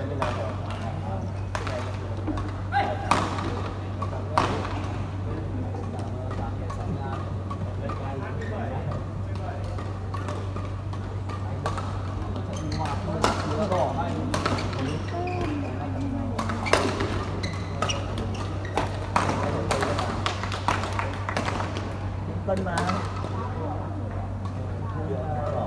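Badminton rackets striking a shuttlecock: sharp, separate hits a second or less apart during a rally, bunched in the second half, over a steady low hum in the hall and players' voices.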